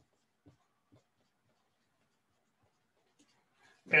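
Faint dry-erase marker strokes on a whiteboard: a few soft, short squeaks and taps, otherwise near silence.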